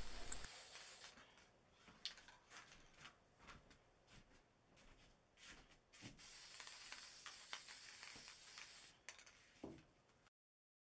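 Mostly near silence with a few faint clicks, then about six seconds in a faint, steady hiss from an aerosol can of copper spray paint that lasts about three seconds and cuts off suddenly.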